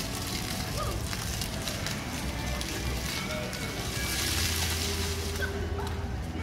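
Ground-level splash-pad fountain jets spraying and splashing onto wet paving, with music and voices behind. The spray hiss grows louder for about a second and a half near the end.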